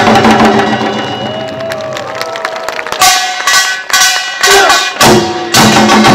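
Korean pungmul ensemble of barrel drums, hourglass drum and small hand gong playing a loud, driving rhythm. The beat thins out for about two seconds, with a sliding tone wavering over it, then the full percussion comes back in strongly about three seconds in.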